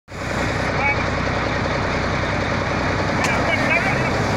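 Cummins M11 inline-six diesel engine of a semi-truck running steadily, a loud, even rumble with no revving.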